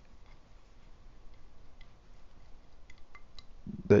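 Faint, scattered clicks and light scraping of a brush against a ceramic saucer as acrylic paint is mixed in it.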